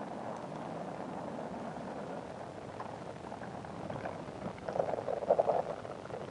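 Rocket engine noise from a Saturn IB lifting off: a steady crackling rumble from its first-stage engines. It grows louder and rougher about four and a half seconds in.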